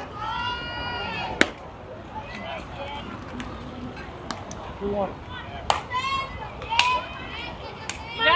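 High-pitched voices of youth players and spectators shouting and calling out at a ballgame, with a sharp smack about a second and a half in and a few lighter knocks later on.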